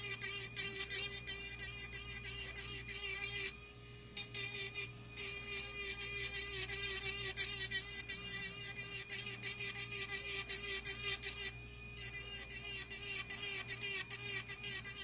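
Electric nail file (e-file) running with a steady high hum while its bit files down powder-acrylic nail enhancement in quick rasping passes, pausing briefly twice as the bit is lifted off the nail.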